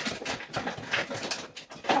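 Wooden spoon scraping and pressing buttered biscuit crumbs around a pan, a quick busy run of scrapes and taps.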